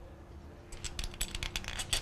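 Light metallic clicks and rattles of a timing chain and its chain guide being handled and fitted into place, an irregular run starting well under a second in.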